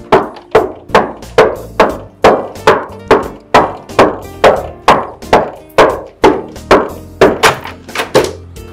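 Repeated knocking on a wooden door, a steady run of a little over two knocks a second that keeps going throughout, over background music.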